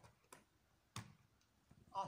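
Near silence, broken by two short clicks less than a second apart, with the first syllable of a spoken word at the very end.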